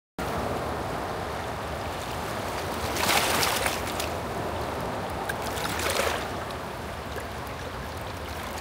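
Steady rush of turbulent river water below a dam, with two louder bursts of splashing, about three and six seconds in, as a small hooked fish flaps in the shallows against the rocks.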